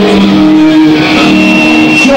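Loud rock music with a distorted electric guitar holding a sustained chord between sung lines. A thin steady high tone comes in about halfway through.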